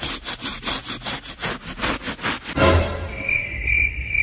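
Rapid rasping scratching strokes, about five or six a second, for the first two and a half seconds. Then a whoosh with a low thump, and cricket chirps in a steady high pulse: the comic 'crickets' effect.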